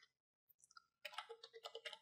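Faint computer keyboard typing: a quick run of light key clicks beginning about halfway through, after a second of near silence.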